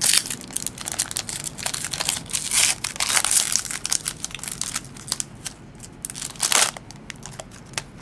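Crinkling and tearing of a trading-card pack wrapper as hands open it and handle the cards, in irregular bursts with a few louder crackles.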